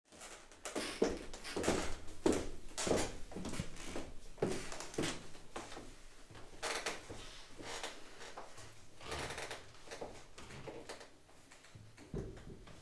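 Irregular footsteps and knocks with some rustling as a singer and a pianist carrying sheet music walk to the microphone and the piano, in a small room. They are loudest in the first five seconds and grow sparser towards the end.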